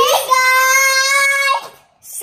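A young boy singing one long, steady note for about a second and a half, which then stops.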